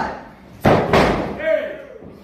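Wrestling referee's hand slapping the canvas of the ring for a pinfall count: loud, sharp slaps, two of them close together about two-thirds of a second in, followed by a short shout.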